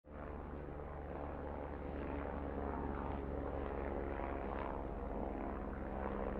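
Small multirotor drone's propellers and motors buzzing steadily in flight, a constant pitched drone over a low hum.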